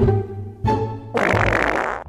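A loud, noisy fart sound lasting just under a second, starting a little past the middle, over background music with plucked notes.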